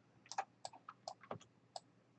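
Faint, sharp clicks of a computer mouse and keyboard in use, about seven of them, unevenly spaced.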